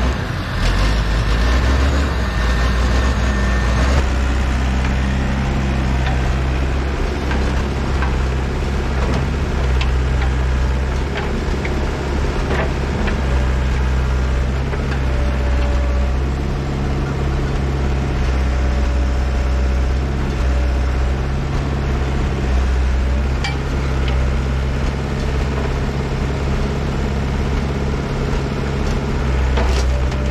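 Diesel engines of a Fiat-Allis wheel loader and a Komatsu excavator running steadily, with scattered knocks and clunks of logs being lifted and set onto the loader's forks.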